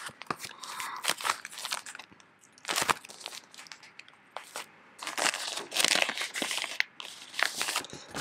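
Clear plastic binder sleeves and sticker sheets crinkling as the pages of a ring binder are flipped and handled, in several bursts with short pauses.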